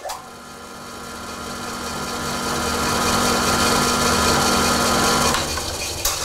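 Floor-standing belt-driven drill press switched on with a click, its motor and spindle spinning up over about three seconds to a steady run with a low hum and a higher whine, belts set for 450 RPM. Near the end the hum and whine drop out and the running noise starts to fade.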